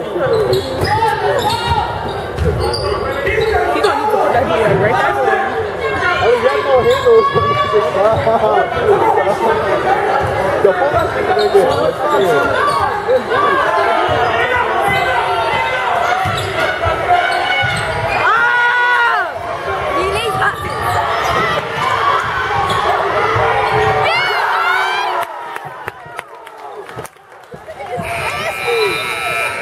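Basketball being dribbled on a hardwood gym floor, repeated low thumps, under the constant talk and calls of spectators, all echoing in a large gymnasium. A few brief high squeals cut through, and the noise drops off near the end.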